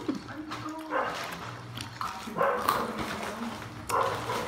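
A dog barking several times in short bursts.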